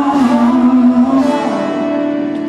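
Live acoustic rock ballad: a held sung note over acoustic guitar fades out about halfway through, leaving the guitar chord ringing.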